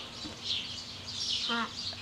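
Small birds chirping in the background: short, high, falling chirps repeating every half second or so.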